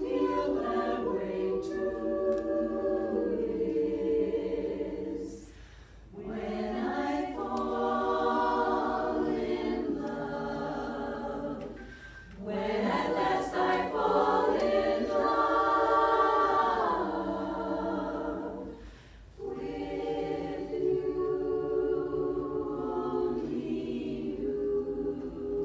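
Women's chorus singing a cappella in several-part harmony, in sustained phrases broken by three short pauses for breath.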